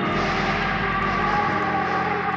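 Instrumental passage of a pop song with no vocals: sustained synth chords over a low bass note that drops out about one and a half seconds in, with a fast, even ticking beat on top.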